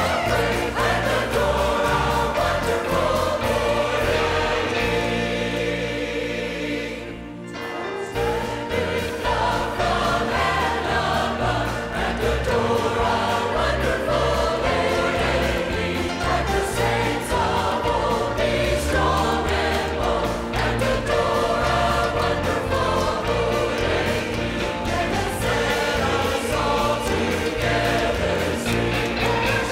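Church choir singing a gospel worship song, accompanied by piano and a band with a bass line. About seven seconds in the music breaks off briefly, then choir and band come back in together.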